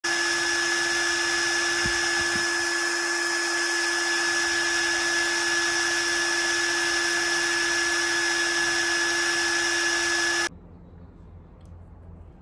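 A loud, unchanging electric whir with a low hum and a high whine running steadily through it, like a power tool held at constant speed; it cuts off abruptly about ten and a half seconds in.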